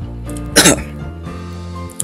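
A man coughs once, sharply, about half a second in, over steady background music.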